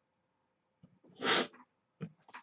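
A single short, sharp breath noise from a person, about a second in, against otherwise near-silent room tone.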